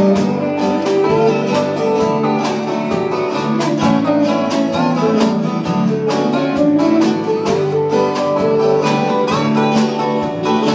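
Ten-string Benoit resonator guitar in C6 tuning, played lap-style with a steel bar, sounding held, sliding notes. Acoustic guitar strums a steady calypso rhythm underneath.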